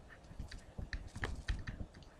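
A pen stylus tapping and scratching on a tablet PC screen while handwriting a word, making an irregular run of light clicks.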